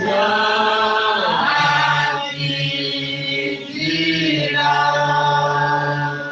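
Voices of a church congregation or choir singing a hymn together, in long held notes.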